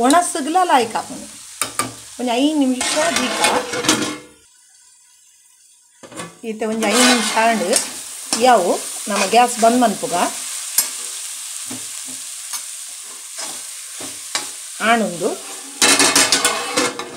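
A steel spoon stirring and scraping potatoes in coconut masala around a nonstick kadai, in spells of squeaky scrapes that waver in pitch, over a faint steady sizzle. The stirring stops for about two seconds near the middle.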